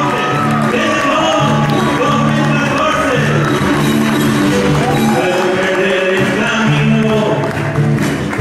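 Live acoustic guitar played with the feet, steady bass notes under the melody, with whoops and cheers from the audience rising and falling over it.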